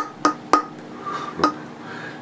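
Four sharp clicks, each with a brief ring, from the aluminium beer can being handled: fingers tapping or gripping it as it is lifted and shown.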